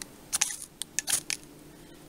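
Spine of a Mora Companion knife scraped against a ferrocerium fire steel in a quick run of short metallic scrapes, lasting about a second.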